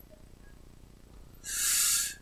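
Faint room tone, then about one and a half seconds in a short, sharp breathy hiss lasting about half a second: a man drawing breath just before speaking.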